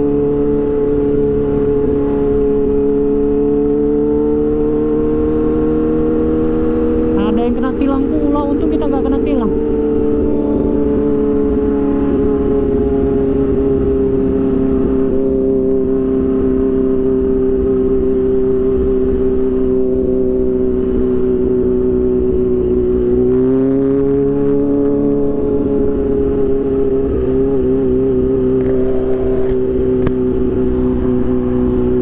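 Kawasaki Ninja H2's supercharged inline-four cruising at light, steady throttle in second gear, its engine note holding one pitch with wind rush underneath. The note sags slightly a little over twenty seconds in, then lifts back as the throttle is opened again.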